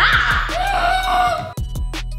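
Background music with a steady beat, under a high, drawn-out call that rises at its start, holds with a slight waver, and cuts off about one and a half seconds in.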